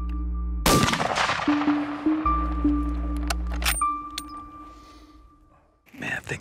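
A single hunting-rifle shot about two-thirds of a second in, its report ringing out and fading over the next couple of seconds. Sustained background music tones run underneath.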